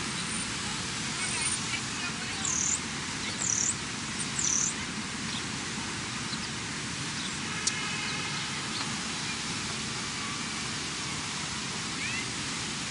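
Steady outdoor background hiss, with three short high chirps about a second apart between two and five seconds in, and a faint click around eight seconds in.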